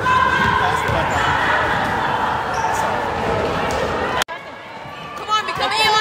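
Basketball game sounds in a gym: a ball dribbling over a busy background of voices. About four seconds in, the sound cuts abruptly to a quieter stretch with short, high squeaks of sneakers on the hardwood court.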